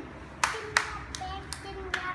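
Five sharp hand slaps or taps, each short and crisp, roughly three a second.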